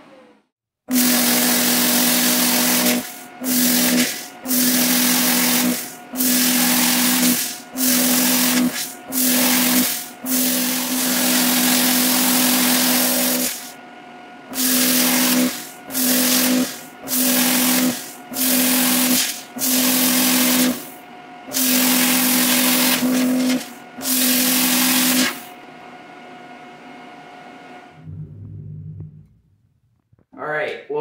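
Hobart Airforce 250ci plasma cutter cutting sheet steel in about seventeen stop-start strokes, each a loud hiss with a steady hum lasting from under a second to a couple of seconds. The unit keeps running more quietly between strokes and for a few seconds after the last one. It is cutting properly again after a new tip and electrode.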